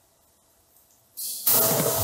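Near silence, then about a second in the played-back mix starts: a rising hiss, followed about half a second later by a much louder, noisy sound effect.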